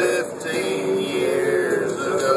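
A man singing long drawn-out notes of a slow country song over a country music accompaniment.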